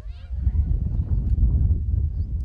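Wind buffeting the microphone: an uneven low rumble that surges and dips.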